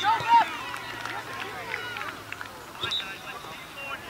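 Players and spectators shouting at an outdoor soccer game, loudest in the first half-second, with scattered shouts and a few sharp knocks through the rest.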